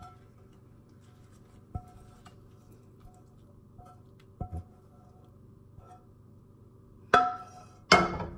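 Quiet background music with a few faint sharp clinks of a frying pan against a ceramic plate as scrambled eggs are slid off it, about 2 and 4.5 seconds in, and a louder knock near the end.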